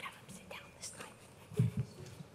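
Quiet whispering among a standing congregation, with two short low thumps about a second and a half in that are the loudest sounds.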